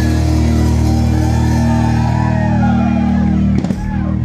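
Live rock band holding a ringing chord on electric guitar and bass, as at a song's close, with a few sharp drum strikes about three and a half seconds in that cut it off.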